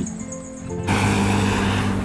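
Background music ends about a second in and is cut off by steady road noise: a broad, even hiss with a low hum underneath, from traffic at a roadside.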